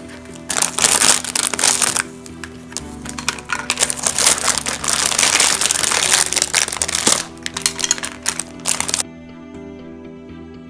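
Clear plastic bags and wrapping crinkling and crackling as the kit's parts are handled and unpacked, in two long spells that stop about nine seconds in, over background music.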